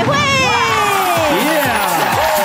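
Several people exclaiming and calling out over one another, their voices sliding up and down in pitch, over background music.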